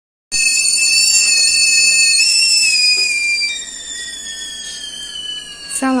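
Stovetop whistling kettle whistling at the boil: several high tones at once that start abruptly, slide slowly lower in pitch and grow quieter after about three seconds.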